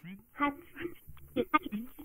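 Granular effect output from a TipTop Audio Z-DSP running the Grain De Folie card's four spread grains algorithm, with freeze and grain-size spread, under random CV modulation. Short, choppy grains of a voice-like sound stutter and jump in pitch, sounding dull with the treble cut.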